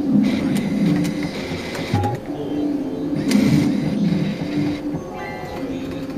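A Barcrest Rainbow Riches Pure Pots fruit machine playing its electronic music and game sounds, with a brief run of high tones about five seconds in.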